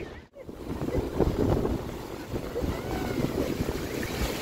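Sea wind buffeting the microphone over the wash of breaking surf at the water's edge, with faint voices in the background.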